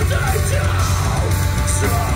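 Sludge/post-hardcore band playing live and loud: distorted guitars, bass and drums, with a vocalist screaming over them.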